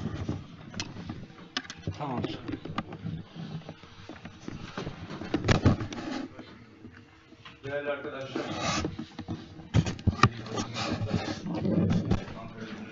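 Indistinct off-microphone voices murmuring in the room, with scattered sharp clicks and knocks.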